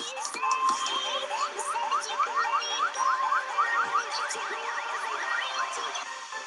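Electronic remix music with a quick run of rising synth sweeps, about four a second, over held notes. Near the end the sweeps turn into wider up-and-down glides.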